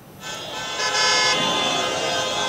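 Vehicle horns honking, several held tones at once, starting about a quarter of a second in.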